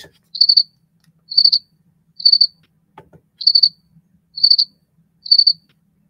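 Recording of a house cricket's song: six short, high-pitched chirps of a few rapid pulses each, about one a second, the stridulating call a male makes to attract a female.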